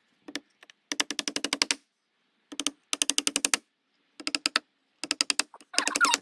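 Hammer driving nails into black alder boards with quick, light taps, about ten a second, in several short runs separated by brief pauses.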